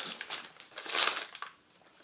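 Paper sandwich wrapper crinkling as it is pulled open by hand, in short bursts, the loudest about a second in.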